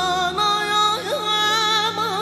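A woman singing a held, richly ornamented vocal line, her pitch wavering and turning, over instrumental accompaniment with a steady low drone; the accompaniment's bass note changes about half a second in.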